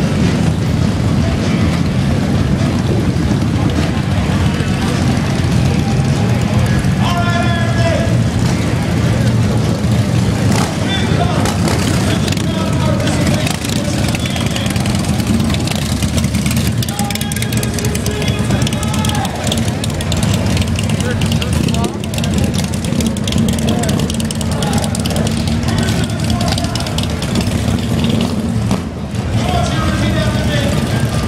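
Loud, steady low rumble of many cruiser motorcycle engines as a line of bikes rides past, with people's voices heard over it a few times.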